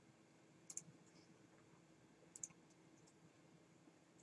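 Near silence with faint computer mouse clicks: two pairs of quick clicks about a second and a half apart, over a low room hum.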